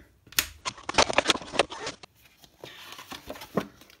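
Hands handling a plastic blister pack and its paper insert: a quick run of sharp plastic crackles and clicks in the first half, then softer paper rustling as an instruction leaflet is pulled out and unfolded.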